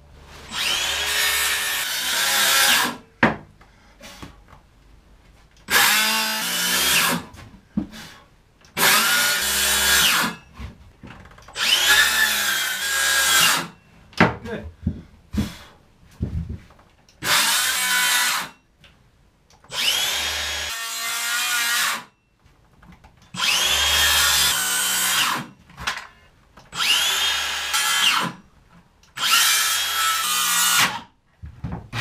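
Circular saw with its blade set shallow cutting a curve in marine-grade plywood in short runs: about nine bursts of two seconds or so, each starting with the motor's rising whine. Small clicks and knocks fall in the gaps as the saw is moved along the cut.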